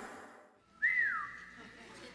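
The tail of an intro jingle fades out to a moment of silence. About a second in comes a single short whistle that rises and then glides down in pitch.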